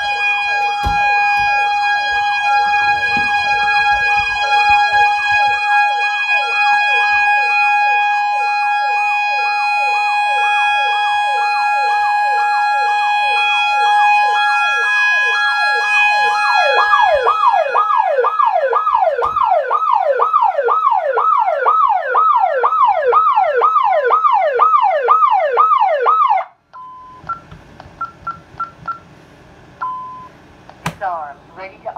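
ADT Safewatch Pro 3000 security system siren sounding in alarm, a fast up-and-down warble about twice a second, with a steady high tone over it through the first half. It cuts off suddenly near the end, followed by a few short keypad beeps as the alarm is canceled.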